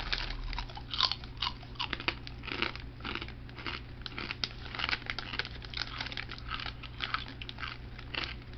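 A person biting and chewing a crunchy snack close to the microphone, with crisp, irregular crunches several times a second.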